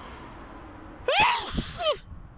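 A man sneezing loudly about a second in, a voiced sneeze whose pitch falls away, with a shorter falling sound right after it.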